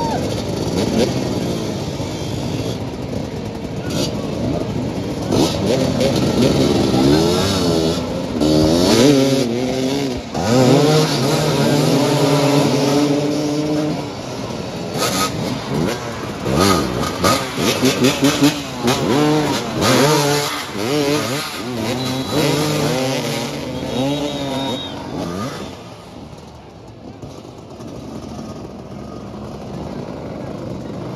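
Several motoball motorcycles revving and accelerating together, their engine notes rising and falling over one another as the riders jostle for the ball, dying down near the end.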